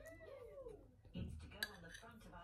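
A toddler's short, high-pitched wordless vocal sound, rising then falling in pitch, in the first second; later a brief clink like a utensil against a dish.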